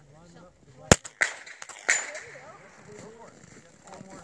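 A single .22 rimfire biathlon rifle shot about a second in, followed by two lighter sharp clacks within the next second.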